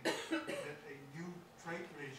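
A person coughing twice in quick succession, the first cough the loudest, with soft speech around the coughs.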